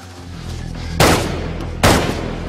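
Two gunshots a little under a second apart, each with a short echoing tail, over low dramatic score music that swells up early on.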